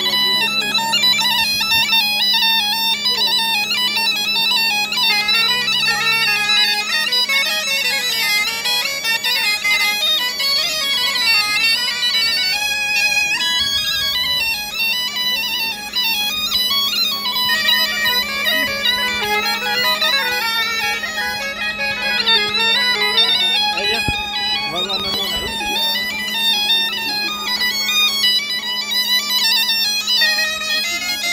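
Breton biniou and bombarde duo playing a traditional tune together: the biniou's steady drone sounds under the two high, reedy melody lines, which move up and down in step.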